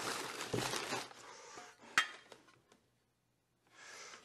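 Packing paper rustling and crinkling as a hand digs through a cardboard box of transmission parts, dying away after about a second and a half. Then one sharp clink about two seconds in, as parts knock together.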